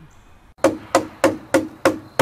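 A hard object hammering on a wooden post: five sharp knocks, about three a second, starting about half a second in.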